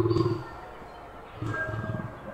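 Lion roaring in deep, pulsed grunts: one call dies away in the first half second, and another begins about a second and a half in.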